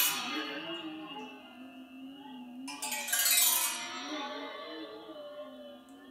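A waterphone with water in its resonance chamber, struck at the start and again about three seconds in. Its metal rods ring on after each strike with a wavering, bending pitch, as the water shifting inside the moving instrument distorts the resonance.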